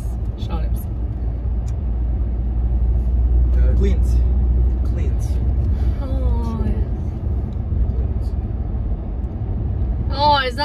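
Steady low rumble of a car driving, heard inside the cabin, growing a little louder a few seconds in.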